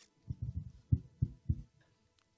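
Microphone handling noise: about five dull, low knocks and bumps within a second and a half as a microphone is handled and switched on. The loudest knock comes about a second in.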